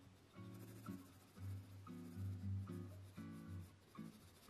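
A 2mm mechanical pencil with 2B lead scratching on sketch paper as it shades, under quiet guitar background music.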